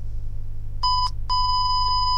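Time-check beep sound effect: a short electronic beep, then a longer one at the same pitch, starting about a second in. It signals the time announcement, as in a radio time check.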